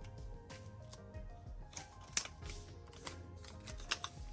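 Paper sticker strip being handled and peeled from its backing: light crinkling and rustling with a few sharp clicks, the loudest about two seconds in, over soft background music.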